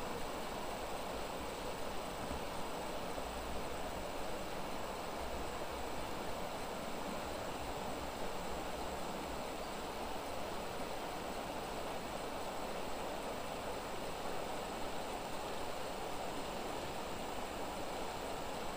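Shallow, fast-running river current rushing over rocks: a steady, even rushing without breaks.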